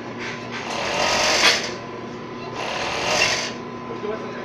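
Hercules HE-360-5 five-thread industrial overlock sewing, in two short runs of about a second each, with a steady hum between them. The machine is stitching a test seam on chiffon after its rear chain thread tension has been tightened.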